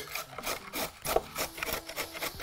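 A carrot being grated on a metal box grater: a steady run of rasping strokes, about four a second.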